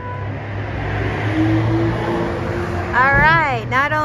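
Steady rumbling noise with a low hum, like an engine or traffic heard indoors, then a woman's voice with strongly swooping pitch starts about three seconds in.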